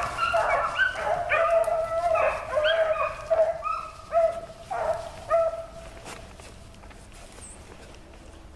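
A pack of rabbit hounds baying on a running rabbit, several dogs' voices overlapping in a steady chorus that dies away about six seconds in.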